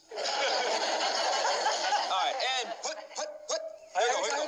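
Sitcom studio audience laughing together for about two seconds, then a few short excited shouts and yelps from the players as the play gets going.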